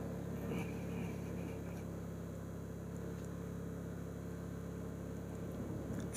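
Motorcycle engine running at a steady cruising pace, heard as an even low drone with a faint haze of road and wind noise.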